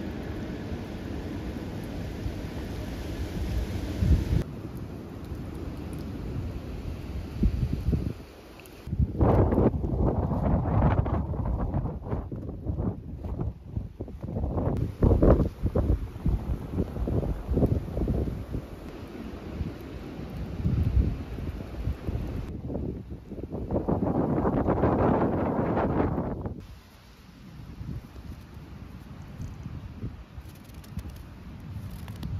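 Wind blowing across a phone microphone outdoors, in gusts that rise and fall. The sound is heaviest at the low end and changes abruptly several times as short clips cut from one to the next.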